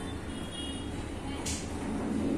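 Steel spatula stirring and scraping a thick, doughy mixture in a non-stick frying pan, with one short sharp scrape about one and a half seconds in, over a steady low rumble.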